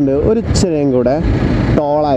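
Mainly a man talking, with a steady low rumble of wind and riding noise from the motorcycle underneath.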